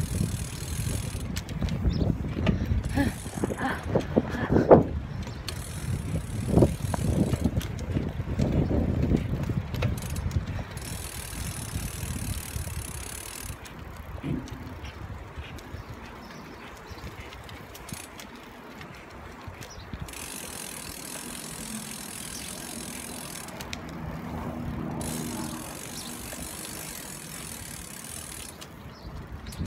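Bicycle ridden slowly on a road: rolling noise with rattles and knocks from the bike, louder and bumpier for the first ten seconds or so, then steadier and quieter.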